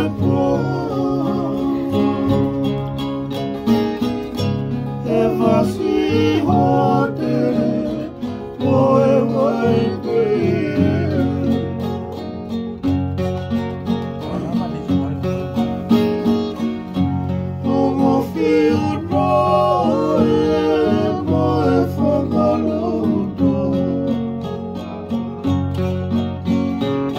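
Live acoustic string band: a ukulele and two acoustic guitars played together while men sing.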